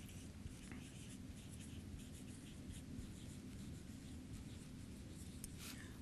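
A felt-tip marker writing on a whiteboard: a run of short, faint scratching strokes as letters are written.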